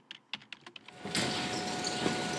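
Soft, sparse keystroke clicks, a typing sound effect. About a second in, a steady hiss with a faint steady hum sets in.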